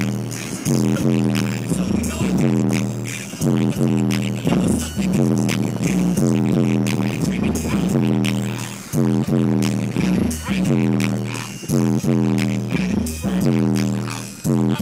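Loud, bass-heavy music playing on a car stereo, heard inside the cabin, with a booming bass line repeating throughout.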